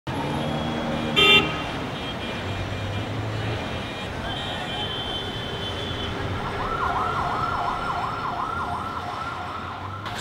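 City street traffic noise with a short, loud vehicle horn blast about a second in. From about six and a half seconds a siren sweeps rapidly up and down, a few cycles a second, over the traffic.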